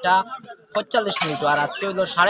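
A man speaking Bengali, with a short pause about half a second in.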